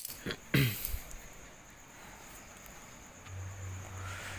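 Crickets chirping steadily in the background, with a few short sharp clicks and rustles in the first second and a low hum starting near the end.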